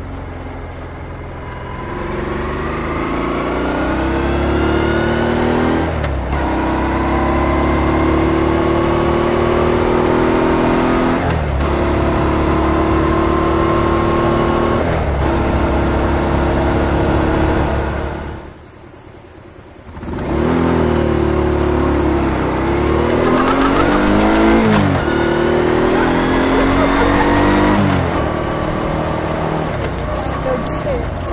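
Honda ST1300 Pan European's V4 engine heard from a microphone under the seat, pulling hard as the motorcycle accelerates up through the gears. Its pitch climbs in each gear and breaks at each shift, three times in the first half. Near the middle the sound drops out for about a second and a half, then the engine pulls through more gear changes.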